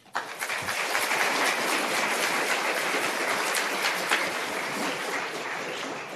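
Audience applauding. The clapping starts suddenly, holds steady, then thins out near the end.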